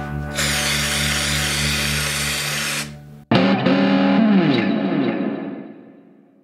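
Aerosol cold spray hissing for about two and a half seconds onto a guitar body's cellulose varnish, chilling it so that the varnish cracks for a relic finish, over background music. After a short break, distorted electric guitar music with falling pitch slides fades out.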